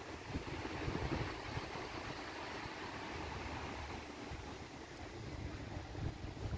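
Outdoor ambience of wind buffeting the microphone in irregular low gusts, over a steady hiss of distant traffic.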